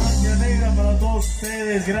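Live cumbia band holding a long low closing note, with a voice over it; it breaks off about a second and a half in.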